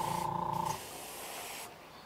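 Airbrush spraying paint onto a lure with a steady hiss, over a steady hum that cuts off under a second in; a fainter hiss lingers and dies away near the end.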